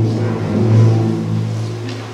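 Symphony orchestra holding a low sustained note that swells about a second in, then fades away near the end.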